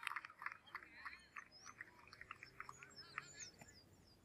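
Faint birds chirping: many short, quick chirps and thin whistles, one after another.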